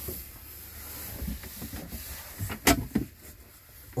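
A cupboard door being opened, with soft knocks and one sharp click about two and a half seconds in, over low rumbling handling noise.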